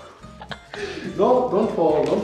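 A man laughing in repeated bursts, loudest from about a second in, over quiet guitar background music.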